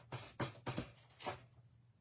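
A few short scraping strokes in the first second and a half as excess wet paint is rubbed and scraped off the edges of a painted craft piece by hand.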